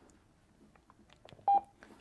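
A single short beep from a handheld DMR radio about one and a half seconds in, among a few faint clicks as the radios are handled.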